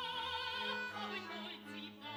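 Operatic singing with a wide vibrato over a small classical ensemble's accompaniment with a sustained bass line, in a baroque comic-opera style.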